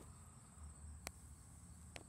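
Faint, steady high-pitched insect trilling in the background, with one light click about halfway through.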